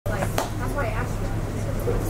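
A person's voice over a steady low hum, with a sharp click near the start.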